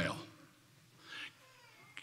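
A man's voice trailing off at the end of a word, falling in pitch, then a pause of quiet room tone with a short soft hiss about a second in.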